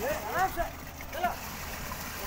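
Wet concrete splattering from a concrete pump hose into rebar formwork over a steady low rumble, with workers' voices calling out twice.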